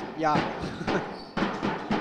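Basketball dribbled on a hardwood court: a couple of sharp bounces ringing in a large sports hall.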